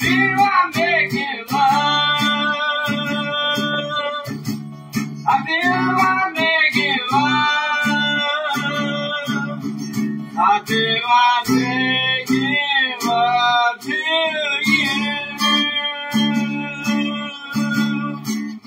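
Acoustic guitar strummed in a steady rhythm with a voice singing over it, holding long notes.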